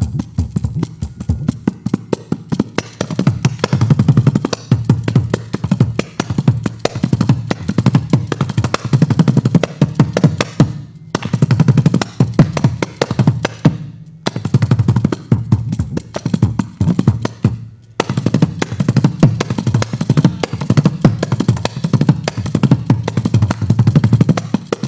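Kanjira, the small South Indian lizard-skin frame drum with a single jingle, played in fast, dense runs of strokes, with three short breaks in the middle stretch.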